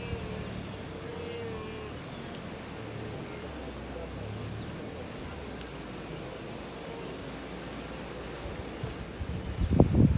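A distant wildebeest herd crossing a river: a steady mix of splashing and animal calls over a low rumble. Loud buffeting on the microphone starts near the end.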